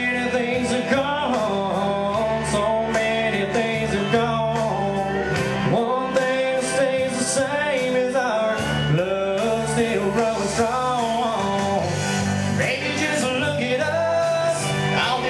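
Country song with a man singing over instrumental backing.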